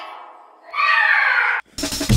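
A loud, short cry that slides down in pitch, like a meow, followed by a brief gap; then a drum and bass beat with heavy bass drum cuts in abruptly near the end.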